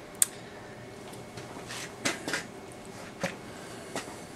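Quiet room tone with a few short, soft clicks and knocks: one about a quarter second in, a small cluster around two seconds, and another just after three seconds. The sound of a handheld camera being handled.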